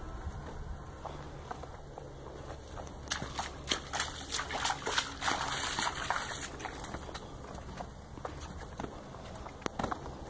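A quarter horse's hooves splashing through a puddle of muddy water at a walk: a run of wet splashing steps from about three seconds in until past six seconds.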